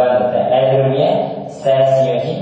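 Speech: a man's voice talking slowly, with long drawn-out syllables that sound almost chanted.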